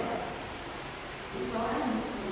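Speech: a girl reading aloud into a microphone, pausing briefly in the middle.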